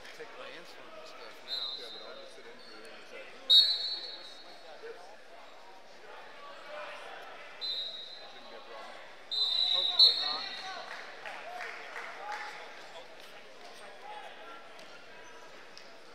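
Wrestling shoes squeaking on the mat in several short, high-pitched squeaks, the loudest about three and a half seconds and ten seconds in, over a steady background of indistinct voices echoing in a large hall.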